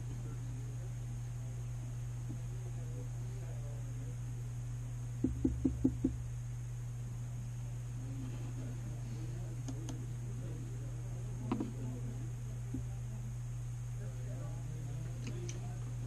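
Quiet room with a steady low hum and faint, distant talk in the background. About five seconds in comes a quick run of five or so knocks or clicks, and a few single clicks follow later.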